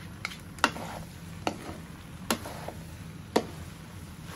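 A nylon slotted spatula and a wooden spatula tossing flat noodles in a nonstick wok, knocking against the pan about five times at uneven intervals, over the sizzle of frying.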